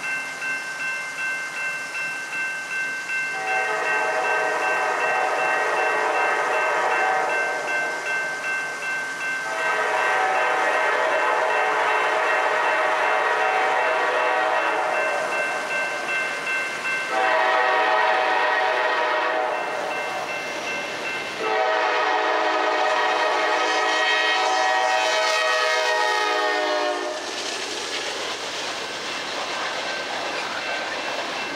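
Norfolk Southern GE Dash 9 (D9-40CW) locomotive's air horn sounding the grade-crossing signal as it approaches: two long blasts, a short one, and a final long one. After the last blast the train's rumble continues as the autorack cars pass.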